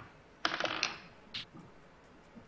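Dice clattering on a table: a short burst of rapid clicks about half a second in, then one more brief click a little later, as the players roll for a perception check.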